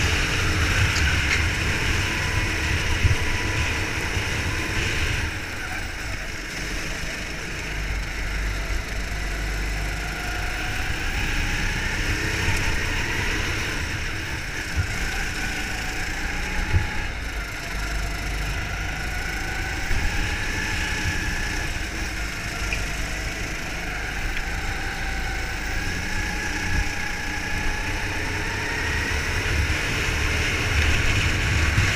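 Go-kart engine heard from the kart's own onboard camera at racing speed, its pitch rising and falling as the kart speeds up and slows through the corners, over a steady rush of wind and tyre noise.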